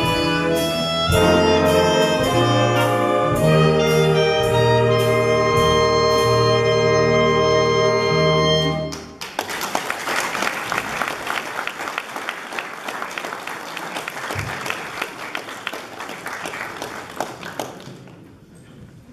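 A swing orchestra of saxophones, clarinets and brass plays the final chords of a piece, ending on a long held chord about nine seconds in. Audience applause follows and thins toward the end.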